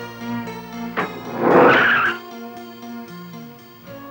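A car door shuts about a second in, then a car pulls away with a screech of tyres lasting about a second, the loudest sound here. Film background music with steady held notes plays underneath.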